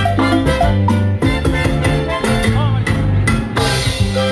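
Live cumbia band playing loudly over the stage sound system: an instrumental passage with drums, a steady bass line and pitched melody instruments, without singing.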